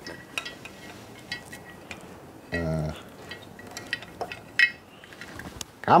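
Scattered light metallic clicks and clinks as a Kawasaki ZZR1100's cylinder block is handled over its pistons and the cam chain is fed up through the block's chain tunnel, with a short hummed voice sound about halfway.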